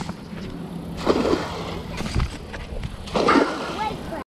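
A monofilament cast net is thrown out and lands on the water with a splash, against outdoor background noise. Brief low vocal sounds come about a second in and again near the end.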